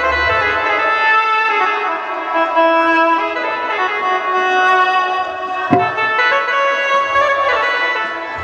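Instrumental music from the stage band: a sustained melody of held notes, with a single sharp drum hit a little before six seconds in.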